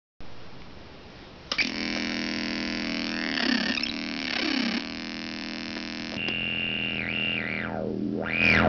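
Homemade optical synthesizer, light-controlled through a photocell, switched on with a click about a second and a half in. It drones a buzzy, many-overtoned tone whose low-pass filter sweeps up and down as hands shade the photocell. Near the end a bright band swoops rapidly up and down, over and over.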